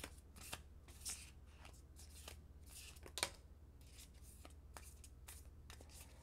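A deck of tarot cards being shuffled by hand: a faint, irregular run of soft card clicks and slides, with one sharper snap of the cards about three seconds in.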